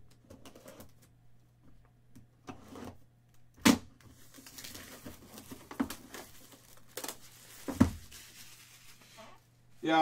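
Clear plastic wrapping crinkling as hands work it open, with a few sharp knocks on the table; the two loudest knocks come nearly four seconds in and near eight seconds.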